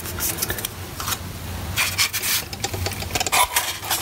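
Irregular rubbing and scraping handling noise, in uneven bursts, loudest about halfway through and near the end.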